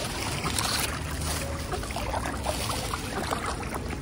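Water sloshing and splashing around a crowd of mute swans and mallard ducks jostling and dabbling at the water's edge. Many small splashes and pecks come and go over a steady low rumble.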